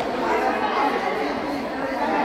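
Indistinct chatter of many voices talking and calling at once, echoing in a large gymnasium.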